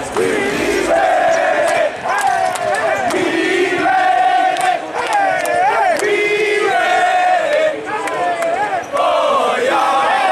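A group of young men chanting loudly together in a victory chant, a string of drawn-out shouted notes that change pitch from phrase to phrase.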